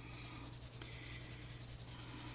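Coloured pencil scratching on a coloring-book page in quick, regular back-and-forth shading strokes.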